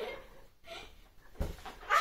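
A large clear confetti balloon handled and pressed with a pin without bursting: mostly quiet, with one dull thump about one and a half seconds in. The pin is blunt and cannot get through the balloon.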